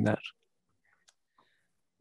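A man's voice on a headset microphone ends a word, then near silence during the handover between speakers, broken by two faint clicks about a second in.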